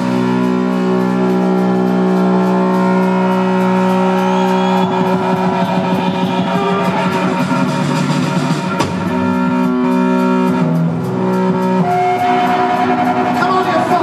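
Live rock band with electric guitar and bass playing long, held chords that shift to new notes every few seconds.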